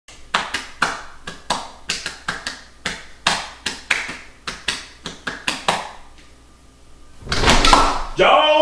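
Hands slapping a bare belly in a quick drumming run of about twenty sharp pats, three or four a second, that stops about six seconds in. A louder scuffling noise follows near the end.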